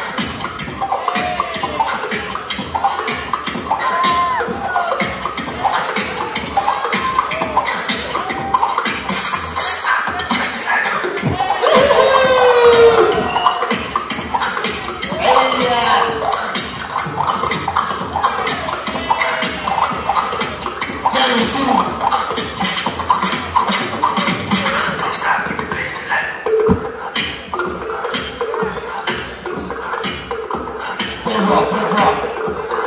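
Beatboxing: a steady, fast rhythm of mouth-made kick and snare sounds with pitched vocal sounds and scratch effects over it. A loud run of sliding vocal sounds comes near the middle.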